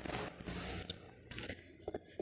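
Faint rustling of fabric being handled close to the microphone, with a few light clicks in the second half.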